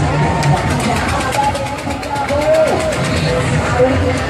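Busy fairground din: people talking over a steady low machine hum, with a fast run of faint high clicks in the first couple of seconds.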